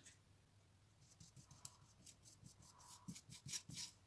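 Faint, scratchy strokes of a paintbrush dragged along the side of a thick stretched canvas: a quick run of short strokes starting about a second in.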